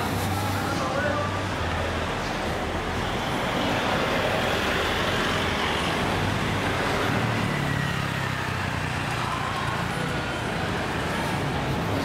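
City street traffic: car and van engines running as they pass at low speed, over a steady wash of road noise, with a low engine hum that shifts in pitch partway through.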